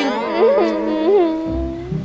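A girl's drawn-out, wavering crying wail over background music, with a low bass coming in near the end.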